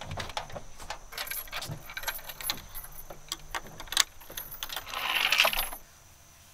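Metal bolts and hardware clinking and knocking against a wooden board on a pickup truck's bed rail as it is worked on by hand, with a louder scrape near the end that cuts off suddenly.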